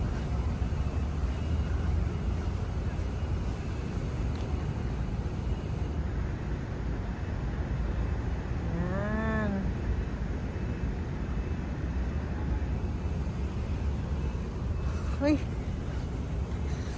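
City street ambience: a steady low rumble of distant traffic. About nine seconds in comes one short pitched call that rises and falls, and near the end a brief rising squeak.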